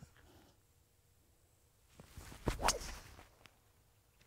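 A driver swung off the tee: a short swish and a sharp crack as the clubface strikes the golf ball about two and a half seconds in, a well-struck drive.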